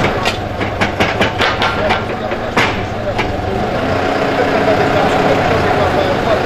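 Komatsu backhoe loader's diesel engine running steadily, with a quick series of sharp knocks and clanks in the first three seconds as the front bucket works the soil.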